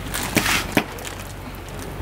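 Hands pressing and rubbing butter into the scored sides of a whole fish on a wooden chopping board: a few short rubbing and knocking sounds in the first second, then quieter handling.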